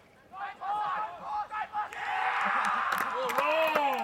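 Spectators at a rugby league game shouting, building about halfway through into loud cheering with one long drawn-out yell near the end.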